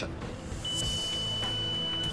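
Background music with a single steady high electronic beep, starting about half a second in and held for about a second and a half, from a handheld refrigerant identifier as it begins testing an R12 sample.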